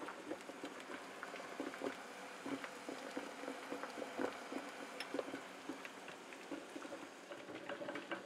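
Water heating in a saucepan under a metal wax-melting pitcher (a double boiler), giving faint, irregular small ticks and bubbling pops.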